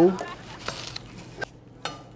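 Light kitchen handling at a counter: about three soft clicks and knocks, spaced out over the quiet, as food and utensils are handled.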